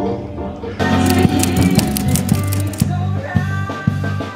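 Music: about a second in, one piece gives way suddenly to a band playing, with drum kit, cymbal hits and bass guitar.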